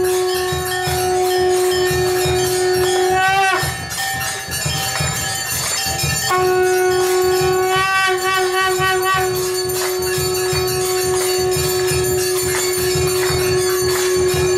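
Temple aarti music: brass bells ringing continuously over a quick, steady drum beat, with a long, held, horn-like tone above. The tone breaks off with a rising glide about three and a half seconds in and comes back a few seconds later.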